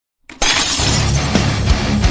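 A glass-shattering sound effect bursts in about a third of a second in, over the start of a loud rock intro track with a regular drum beat.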